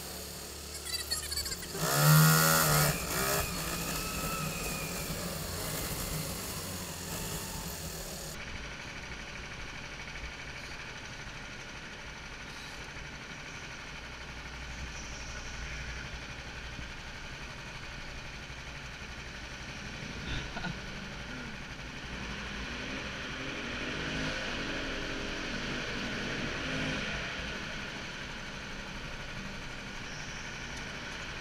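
Go-kart engines running. About two seconds in, an engine revs up sharply; after that comes a steady engine sound whose pitch rises and falls as the karts speed up and slow through the corners.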